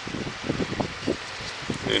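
Handling noise: quick, irregular small clicks and rustles as a plastic box fan switch is held and turned in the fingers close to the microphone.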